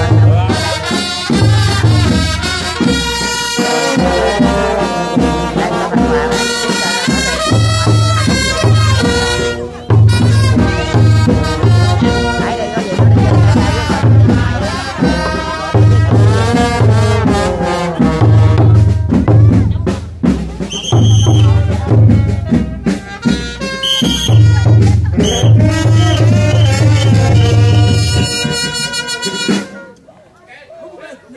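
A kèn tây brass band, with trumpets, trombones and drums, playing a funeral piece over a steady beat of heavy low drum pulses. The music stops abruptly near the end.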